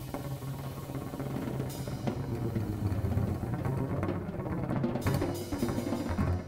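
Improvised jazz ensemble music carried by the drum kit: dense, continuous drumming with a heavy low rumble that comes in suddenly at the start after a brief lull.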